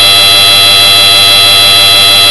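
Very loud, distorted electronic buzzing tone, an ear-splitting meme sound effect held at one steady pitch with many shrill overtones, clipped near full volume.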